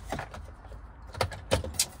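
Handling noise from a metal console plate being lowered over the shifter and set against the center console. A few sharp clicks and knocks come in the second half.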